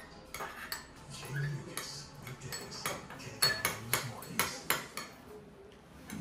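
Metal spoon and fork clinking and scraping against a ceramic bowl, a run of light clinks that grows busier and louder after about three seconds, then tapers off near the end.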